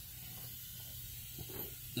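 Faint steady hiss of background noise with a low hum beneath it, and a soft, brief sound about one and a half seconds in.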